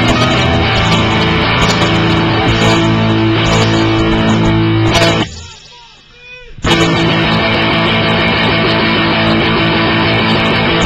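Loud rock band playing: electric guitar, bass and drums. About five seconds in the whole band stops dead for about a second and a half, leaving only a faint pitched sound, then comes back in all together.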